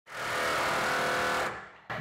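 Milwaukee cordless reciprocating saw running steadily as it cuts into a car's sheet-steel body, then winding down and stopping about a second and a half in. The blade is probably worn out.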